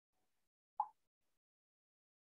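Near silence with a single brief, soft pop a little under a second in.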